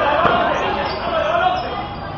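A basketball bouncing on a hard court during play, with players' and spectators' voices calling and chattering throughout.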